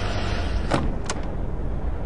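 A vehicle engine running with a steady low rumble, with two short sharp clicks a little under and just over a second in.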